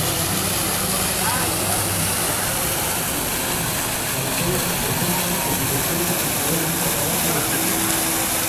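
Outdoor town-square ambience heard from above: a steady, even noise with faint voices and vehicle engines in the distance.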